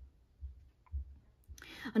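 A quiet pause in a woman's talking, with a few faint low thumps, then her voice starting again at the very end.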